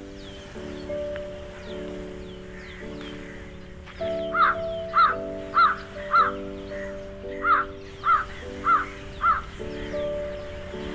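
Background music with steady chords. From about four seconds in, a crow caws loudly in two runs of four, the caws evenly spaced a little over half a second apart.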